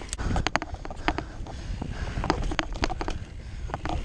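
Mountain bike riding fast down a muddy dirt singletrack: many sharp, irregular clicks and clatters of the bike rattling over bumps, over a steady low rumble of tyres and wind.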